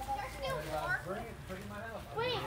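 Faint background chatter of several overlapping voices, children's among them, with no clear words.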